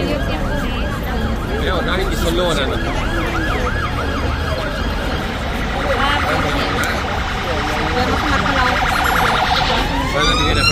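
Emergency vehicle siren sounding, a rapid rise-and-fall yelp at about three cycles a second that changes to a faster warble about six seconds in, over a steady low rumble.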